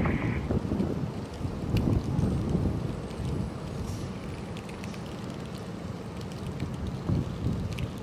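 Wind buffeting an outdoor microphone: an uneven low rumble, stronger for the first few seconds and easing after.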